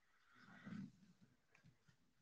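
Near silence: the faint room tone of a large meeting hall, with one brief, faint, indistinct low sound about half a second in.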